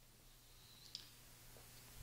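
Near silence: room tone with a steady low hum and one faint click about a second in.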